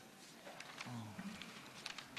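Quiet room tone with faint paper handling and a few light clicks, and a brief low hum of a voice about a second in.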